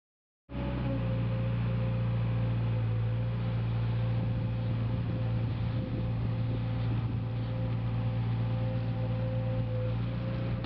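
Diesel motor on a work barge running steadily under load as its crane hoists a cage of oysters: a constant low engine hum with a thin steady whine above it. It starts abruptly about half a second in, after a moment of silence.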